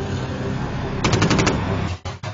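A short burst of automatic gunfire, about seven rapid shots in half a second, about a second in, over a low rumble.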